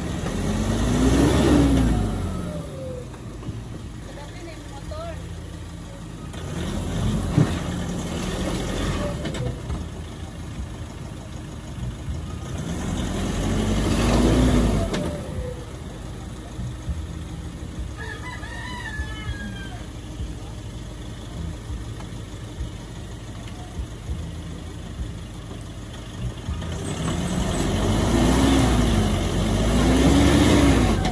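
Nissan Navara pickup's 2.5 turbodiesel engine revving in four surges, each rising and falling in pitch, as the truck tries to pull out of mud it is stuck in. A rooster crows once, a little past halfway.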